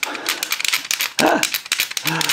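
Rapid, repeated clicking of the arm-raising lever on the back of a 1975 Kenner Six Million Dollar Man action figure, clicked again and again while the arm fails to rise. The ratchet gears inside may be slipping.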